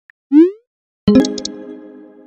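Faint on-screen keyboard clicks, then a short rising swoop as a text message is sent. About a second in comes a loud struck chord-like sound that rings and slowly fades.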